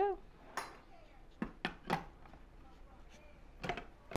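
A few light knocks and clinks of kitchenware being handled at a food processor: one about half a second in, three close together around the middle, and a pair near the end.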